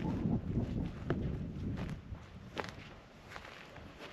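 Footsteps on dry desert ground, about five steps a little under a second apart, over a low rumble of wind on the microphone.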